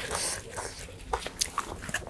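Close-miked mouth sounds of someone chewing food: scattered soft clicks and smacks with a brief hiss.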